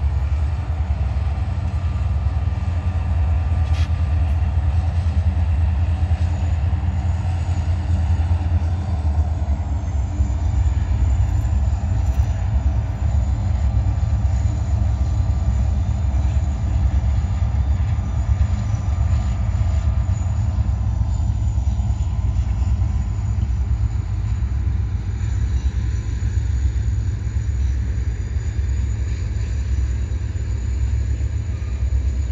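Freight train hauled by three diesel locomotives passing slowly, a steady low rumble of engines and rolling cars.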